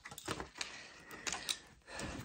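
A few light, irregular clicks and some scratching from a paint marker being handled and worked to get the paint flowing, with a faint thin squeak near the end.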